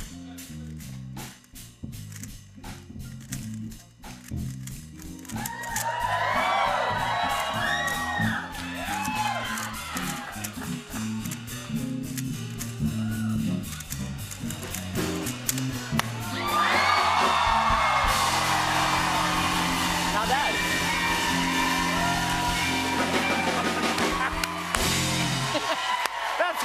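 Rapid clicking of a Rubik's Cube being turned over band music with a stepping bass line. From about five seconds in, the audience whoops and cheers, and after about sixteen seconds this swells into loud cheering and applause as the solve finishes.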